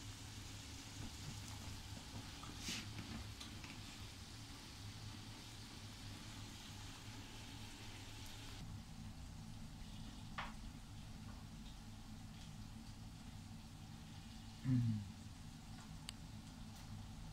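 Faint, steady sizzling of scallops and beef frying on a tabletop grill plate, with margarine melting on the scallops; the sizzle thins a little about halfway through. A couple of small clicks, and a short voice sound falling in pitch near the end.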